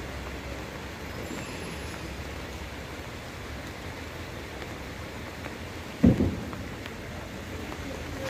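Steady heavy rain falling on floodwater and foliage. About six seconds in, a single sudden low thump stands out above the rain.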